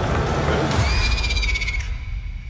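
Film trailer soundtrack: a loud, dense mix of music and sound effects with a deep rumble underneath, and a thin high tone that falls slightly from about a second in to near the end.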